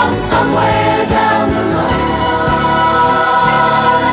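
Gospel music by a vocal group singing in harmony over instrumental backing, holding a long chord through the middle.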